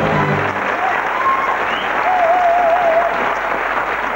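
Studio audience applauding as the closing chord of the theme tune dies away about half a second in.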